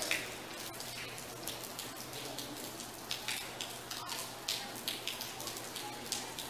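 Open-air ambience of a football match in a near-empty stadium: a steady crackly hiss with many scattered sharp ticks, and faint distant shouting from the pitch near the start and again about four seconds in.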